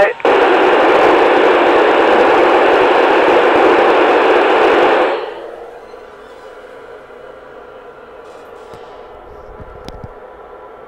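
Yaesu FT-897D radio receiver hissing with loud, even static in the narrow radio band once the astronaut unkeys and the downlink carrier is gone. About five seconds in the hiss falls away sharply, leaving only a faint hum.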